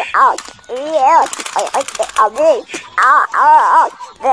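A child's high-pitched voice making wordless, playful sound-effect noises that swoop up and down in pitch, with a quick rattle of clicks about a second in.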